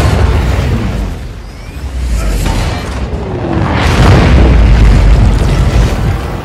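Film sound effects of a moon breaking apart and its debris raining down: a deep booming rumble with explosions. It starts suddenly, dips about two seconds in, and swells to its loudest in the last two seconds, with orchestral score underneath.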